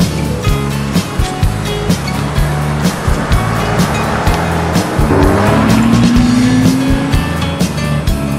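A song with a steady beat plays throughout. Over it, a 1998 Honda GL1500 Gold Wing with sidecar passes close by. Its flat-six engine note rises as it accelerates and is loudest a little after the middle.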